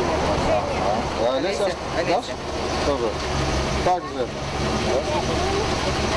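GAZelle light truck's engine idling steadily, with children's and adults' voices talking over it.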